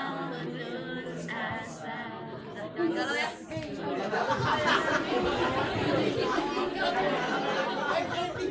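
Unaccompanied voices singing for the first few seconds, then many people talking at once, echoing in a large hall.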